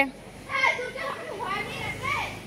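A child shouting to call someone: two drawn-out, high-pitched calls.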